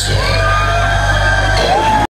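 Hardstyle dance music played loud over a club sound system, with heavy bass and gliding high notes, and the crowd yelling and whooping over it.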